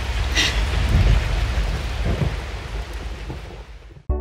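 A dense rain-like noise over a deep rumble, like a downpour with thunder, fading away steadily over about four seconds.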